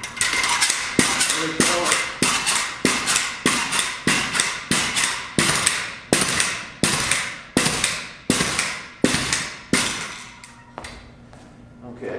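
Spring pogo stick bouncing repeatedly on a hard floor, each landing a sharp metallic clank with a short ring as the spring compresses, the spring bottoming out on some landings. About two bounces a second for some ten seconds, then the bouncing stops.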